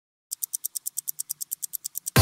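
Rapid, evenly spaced ticking sound effect, about eight short sharp ticks a second, like a fast-running clock.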